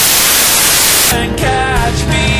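A loud burst of static hiss that cuts off sharply about a second in, after which the song's music comes back.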